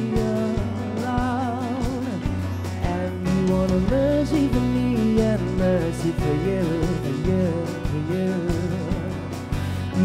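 A live band playing: a male voice sings a wavering melody over strummed acoustic guitar and a drum kit, with low sustained notes underneath.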